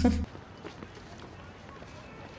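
A short laugh that cuts off a quarter second in, then only faint, low background sound from the film's soundtrack.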